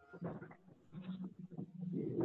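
A person's voice, faint, in short broken sounds over a video-call connection, without clear words.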